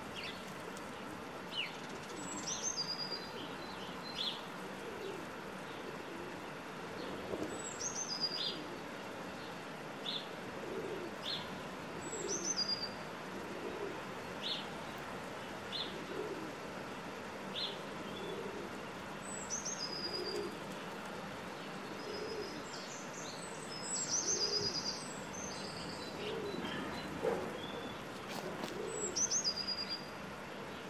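Outdoor birdsong: a short high song phrase that falls in pitch, repeated every few seconds, with separate short chirps and a series of low calls beneath, busiest about three-quarters of the way through.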